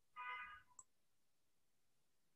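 Near silence broken by one brief pitched call, about half a second long, followed shortly after by a single faint click.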